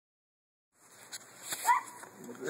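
A miniature poodle gives one short, rising whine near the end, after a light click about a second in.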